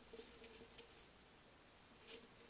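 Near silence with a few faint, light ticks in the first second: a hedgehog pattering close beside the trail camera.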